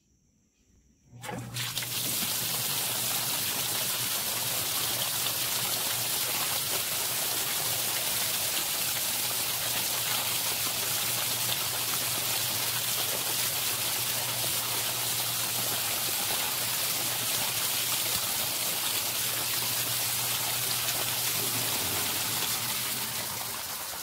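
Zoeller M98 half-horsepower submersible sump pump starting about a second in and pumping water out of a basin through a 1.5-inch PVC discharge pipe: a steady rush of water with a low motor hum. Near the end the hum stops as the basin empties and the flow of water tapers off.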